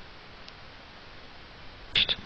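Low steady hiss of a microphone's background noise in a quiet room, with a faint click about half a second in and a sharper click right at the end.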